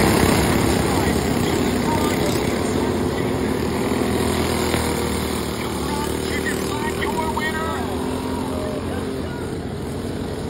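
Several racing go-karts' small engines running together as the karts pass close by and carry on around the dirt oval, growing slightly fainter as they move away.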